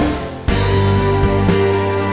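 Progressive rock song in an instrumental passage with no vocals: a held chord dies away briefly, then the full band with drums comes back in about half a second in.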